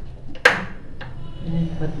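A sharp click as the control knob of a portable tabletop stove is turned to switch it on, with a couple of fainter clicks around it.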